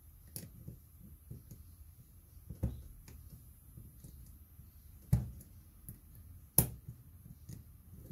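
Small parts and tools being handled on a workbench: a few scattered clicks and taps, the sharpest about two-thirds of the way in.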